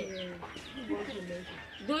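A hen clucking faintly under low, murmuring voices.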